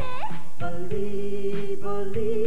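Live band playing a pop song with singing and keyboard: a quick upward glide, then one long held note over a bass line and a steady beat.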